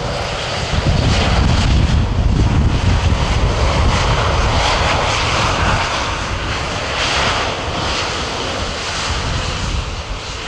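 Airbus A350's Rolls-Royce Trent XWB jet engines running as the airliner rolls past on the ground, a steady jet hiss over a deep rumble that eases off after about five seconds.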